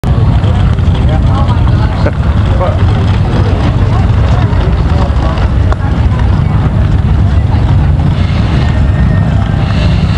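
Motorcycle engines running with a steady, loud low rumble, under indistinct crowd voices and a few light clicks.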